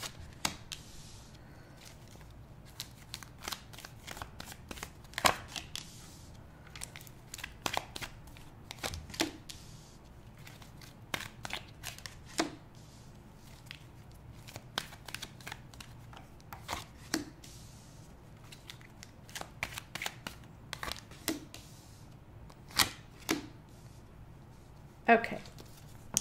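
Tarot cards being pulled from a deck and laid down one by one on a cloth-covered table: irregular soft card snaps and slaps, with the loudest about five seconds in and near the end.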